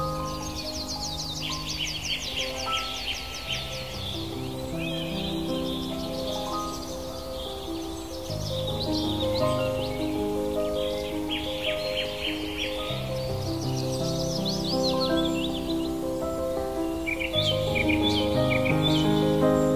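Calm piano music with birdsong laid over it. Birds sing short phrases of quick trilled notes that come and go every few seconds over the slow, sustained piano notes.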